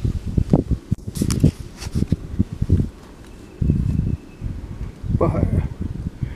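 Handling noise from a handheld camera being swung around inside a fabric hunting blind: irregular low bumps and rustles of cloth against the microphone, in two spells with a short lull between.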